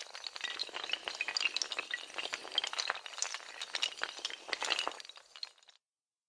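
Sound effect of a long chain of dominoes toppling: a dense run of small hard clicks and clinks after a sharp first hit, cutting off suddenly shortly before the end.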